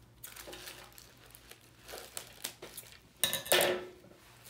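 Gift wrapping and metallic ribbon crinkling and rustling as they are worked at by hand to open a package, with small scattered clicks and the loudest crinkle near the end.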